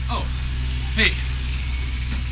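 A steady low hum, with short voice sounds near the start and about a second in.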